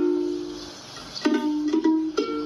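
Ukulele strummed: a chord rings out and fades, then a few more strums come about a second and a quarter in.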